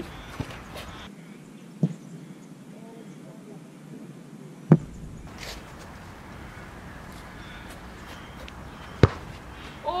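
A boot kicking an Australian rules football: one sharp thud about nine seconds in, with two earlier sharp knocks and steady outdoor background noise between.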